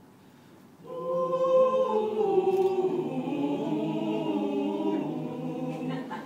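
A choir starts singing unaccompanied about a second in, holding chords in several voice parts.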